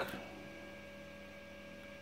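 Faint steady hum of a running Blitz Norma 72-egg incubator, several thin, unchanging tones over a low electrical hum.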